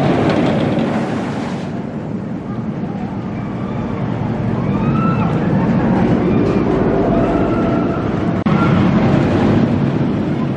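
Viper wooden roller coaster train rumbling and clattering along its wooden track, with riders' screams rising and falling over the noise.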